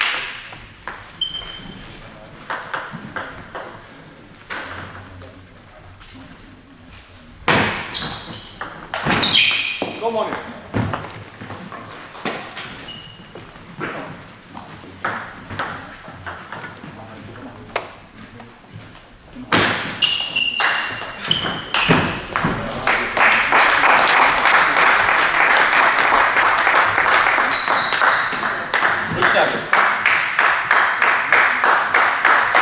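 Table tennis ball clicking off bats and table during rallies, with loud shouts about 8 s and 20 s in. From about 23 s on, clapping fills the hall after the point.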